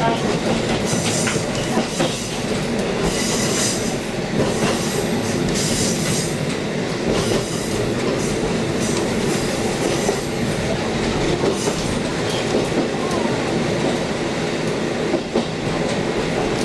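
A KiHa 40 series diesel railcar running, heard from inside the car: a steady diesel engine drone mixed with wheel-on-rail noise and occasional clicks over rail joints and points. Several stretches of high-pitched hiss and squeal come from the wheels as the train takes the curve.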